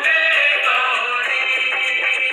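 Hindu devotional aarti song to the goddess Durga: a sung melody over instrumental accompaniment with a steady, regular beat. The sound is thin, with no bass.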